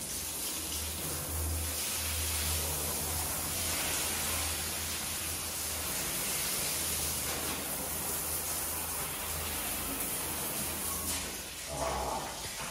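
Water spraying from a hose onto a wooden, glass-paned door: a steady hiss of spray with a low hum underneath.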